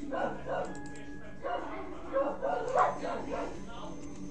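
A dog barking repeatedly, short sharp barks a few tenths of a second apart, over a low steady hum.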